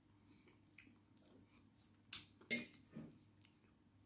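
Faint chewing of a spoonful of omelette, with a few short, sharp clicks and smacks a little past halfway.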